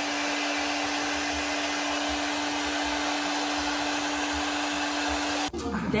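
Handheld hair dryer blowing steadily, a constant rush of air with a steady hum under it; it cuts off suddenly near the end.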